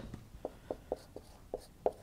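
Marker writing on a whiteboard: a string of short, faint strokes as the letters are formed.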